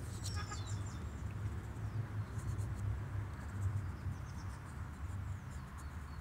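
Outdoor ambience of birds calling: a thin descending whistle just after the start and scattered high chirps later, over a low fluttering rumble.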